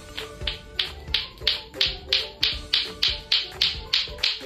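Lato-lato clacker toy, two plastic balls on a string knocking together in a steady rhythm of about three clacks a second, growing louder over the first second.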